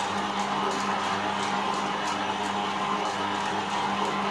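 Stand mixer running at low speed with a steady motor hum as its beater turns through stiff waffle dough. A faint high tick repeats about three times a second.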